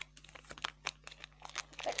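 A foil blind-bag toy packet crinkling as it is handled, an irregular run of sharp crackles that grows louder toward the end.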